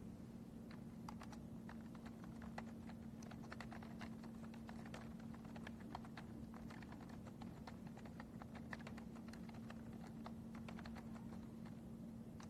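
Faint, irregular clicking of typing on a computer keyboard, several keystrokes a second, over a steady low hum.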